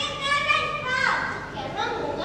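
A child's voice speaking lines aloud.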